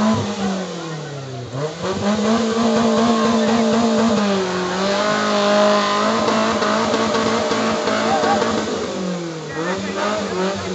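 Maruti Gypsy 4x4 engine revved hard and held high as the stuck jeep tries to claw out of a deep mud pit. The revs sag and climb again about a second in and once more near the end, over the chatter of a large crowd.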